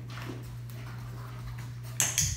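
Faint sounds from a German Shepherd moving about close by, with no barking, over a steady low hum.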